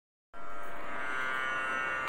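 Steady instrumental music drone: a chord of sustained tones starts about a third of a second in and holds level, the backing for a Tamil devotional song.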